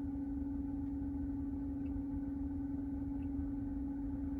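A steady low hum of one even pitch over a low rumble, the background noise inside a car cabin.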